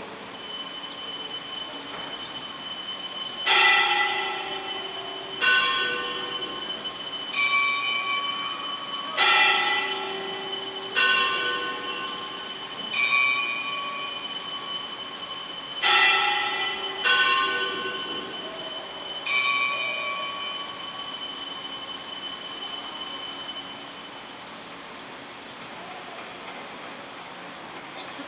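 Church altar bells rung at the consecration of the Mass, signalling the elevation of the host. A continuous high ringing runs through, and nine louder bell strikes sound about every two seconds, each ringing on.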